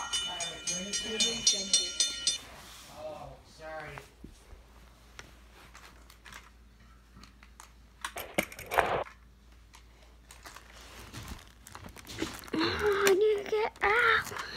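A railroad-crossing bell ringing rapidly and evenly, about four strikes a second, under a child's chanting voice; it cuts off about two and a half seconds in. After that a child talks briefly, there is a short loud burst a little past the middle, and the child talks again near the end.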